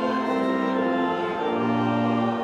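Hymn music with organ accompaniment in a church: sustained held chords, changing about a second and a half in as a deeper bass note comes in.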